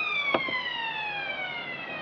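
Racecourse all-clear siren, its pitched tone gliding slowly downward in pitch as it winds down, with a faint click about a third of a second in.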